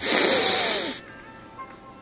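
A loud sniff through the nose, about a second long, that stops sharply.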